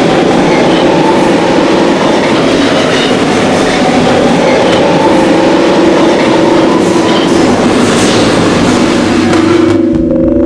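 A loud, steady rumbling and rattling noise with several wavering, long-held tones over it, a train-like soundscape on the production's soundtrack. It stops suddenly at the end.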